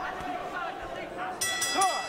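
Arena crowd noise with shouting voices, then a boxing ring bell rings once about one and a half seconds in, ringing briefly: the bell ending the round.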